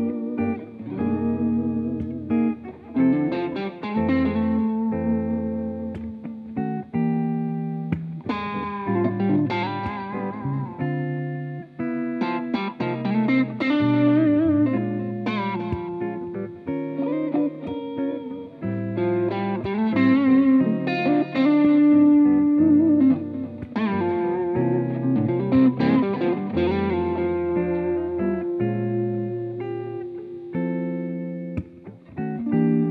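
Guitar duet playing a slow ballad: a solid-body electric guitar plays a singing lead melody of sustained notes over chords and bass notes from a second, hollow-body guitar.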